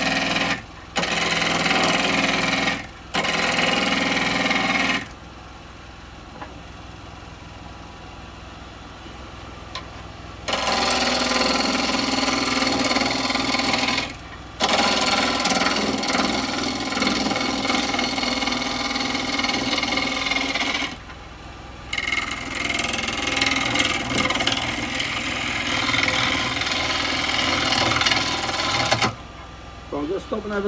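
Carbide cutter scraping a wet wood blank spinning on a wood lathe during rough turning. The cutting comes in repeated stretches, a few short passes and then long ones. In the pauses only the lathe motor's steady hum is heard.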